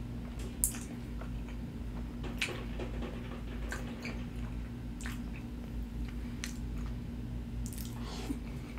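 Close-miked eating: creamy fettuccine alfredo noodles being slurped off a fork and chewed, with wet squishing and many short, irregular smacks and clicks, the sharpest about half a second in. A steady low hum runs underneath.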